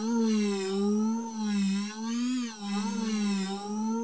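Ableton Wavetable synth pad ('Airlite' preset) holding one sustained note whose pitch wavers gently up and down. The wavering is MPE per-note pitch bend and slide expression drawn into the MIDI note, playing back.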